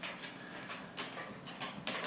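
Low, steady room tone with a few faint, short clicks: one at the start, one about a second in, and one near the end.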